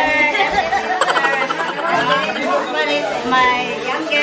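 Several people talking over one another: lively group chatter of voices.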